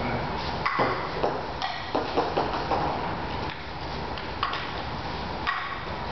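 Table tennis ball clicking off table and paddles: a quick, uneven run of about eight clicks in the first few seconds, then single clicks spaced further apart near the end as a rally gets going.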